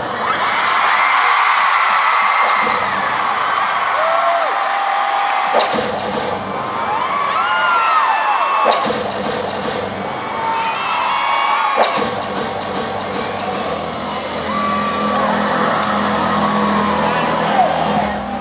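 Arena concert crowd screaming and whooping over loud pop music; a steady bass line comes in about twelve seconds in.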